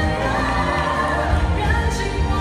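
Music with singing: a Chinese-language song, its vocal holding long, gliding notes over sustained accompaniment.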